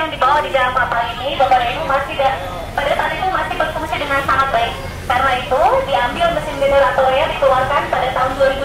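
A woman talking without pause to a group through a small handheld microphone and loudspeaker, her voice coming through thin and narrow.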